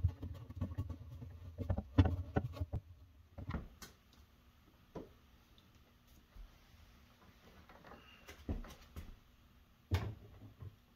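Hand-work clicks and knocks from a screwdriver and refrigerator parts: a busy run of small clicks and taps for the first few seconds, then a few separate knocks with quiet between as the freezer drawer door is handled.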